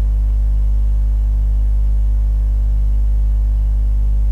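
Steady electrical mains hum in the recording, loud and unchanging, with a faint slow pulsing in its lower overtones.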